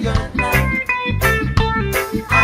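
Reggae music: a plucked guitar line over bass and drums, without singing in this stretch.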